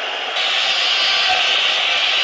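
Stadium crowd noise from a football match broadcast: a steady, hissing roar that swells suddenly about half a second in and then holds level.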